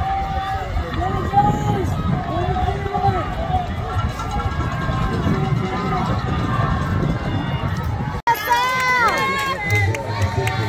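Crowd of spectators cheering and shouting at runners, many voices overlapping. A cut about eight seconds in brings clearer, closer shouting.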